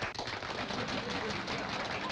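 Applause: many hands clapping in a dense, steady patter.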